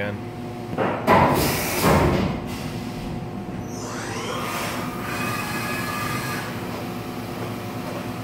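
CNC milling machine starting up again after a tool change: bursts of rushing noise about a second in, then the spindle spinning up with a rising whine around four seconds in and running on at a steady pitch over the machine's steady hum.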